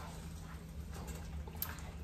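Silicone spatula quietly stirring and breaking up raw ground beef in a frying pan, with a faint tap or two against the pan near the end, over a steady low hum.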